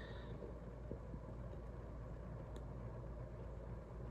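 Faint, steady low rumble of outdoor background noise, with a short high-pitched sound right at the start.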